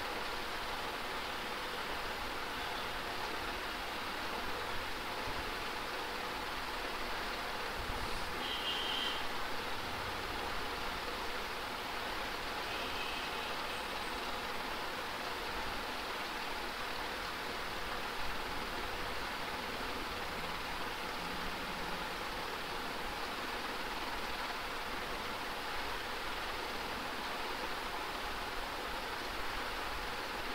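Steady, even background hiss with nothing else standing out, apart from two faint brief high tones in the first half.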